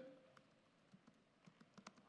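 Faint laptop keyboard typing: a scattering of soft key clicks, coming closer together in the second half.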